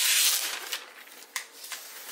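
Plastic wrapping being pulled off a laptop: a loud crinkling rustle of thin plastic film in the first half second, then quieter rustling with a couple of small clicks.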